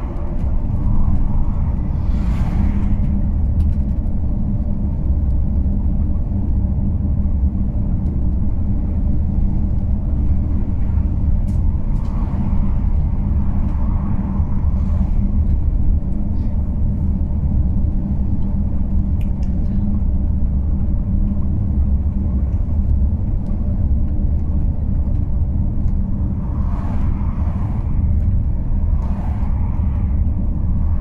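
Steady low rumble of a car driving on an open road, engine and tyre noise at a constant speed. Oncoming cars pass with brief swells of sound a few times, including near the end.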